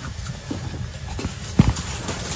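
Short knocks and taps of hands and utensils on a plastic chopping board while flattening bread dough, with one louder thump about one and a half seconds in, over a steady low rumble.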